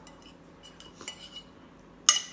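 Metal fork clinking and scraping against a ceramic bowl: a few light clinks, most of them about a second in.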